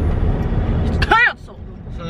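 Low road and engine rumble inside a moving car's cab, with a brief voice sound about a second in; the rumble drops off abruptly shortly after.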